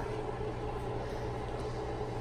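A steady low electrical hum with a fainter, higher steady tone above it: a running appliance in the room.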